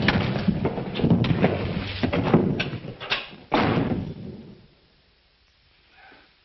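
Two men fighting hand to hand: a rapid run of thuds, blows and scuffling. A last heavy thump comes about three and a half seconds in, and the noise stops soon after.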